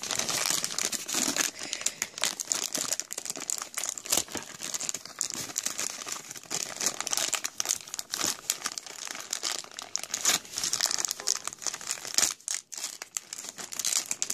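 A thin plastic toy bag crinkling and crackling continuously as hands squeeze and work it open, with a brief lull near the end.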